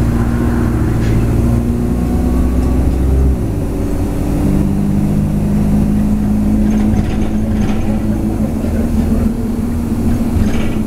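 London bus engine and road noise heard from inside the passenger cabin while the bus is moving. About three seconds in, the deep engine drone drops away and a steadier, higher engine note takes over.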